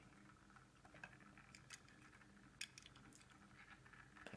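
Near silence with a few faint clicks from fingers handling and turning a small die-cast toy car.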